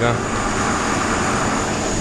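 A generator running somewhere below, heard as a steady mechanical drone.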